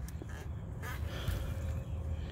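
Faint rustling of straw mulch and potting soil as a gloved hand digs into a five-gallon bucket planter to check the soil's moisture, over a low steady rumble.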